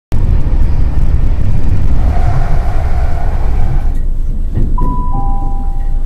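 A passenger train running with a loud low rumble, heard from inside the carriage; the rumble eases about four seconds in. Near the end a falling two-note chime sounds over the train's public-address system, the signal that an on-board announcement is coming.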